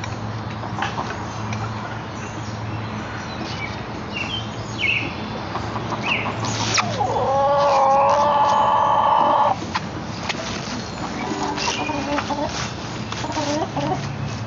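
Chickens clucking, with a rooster crowing once for about two and a half seconds in the middle, the crow starting on a rising note and then holding steady.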